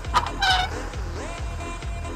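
A tractor's diesel engine running under load as it pulls a mounted plough through the soil, a steady low rumble with a regular pulse, with a few short pitched sounds over it.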